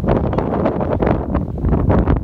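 Wind buffeting the microphone: a loud, continuous rumble broken by many short gusty crackles.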